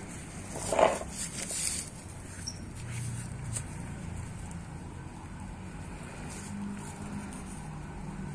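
Faint rustling and scratching of fingers working through loose potting soil and fine roots, over a low steady background. One short, louder sound comes about a second in.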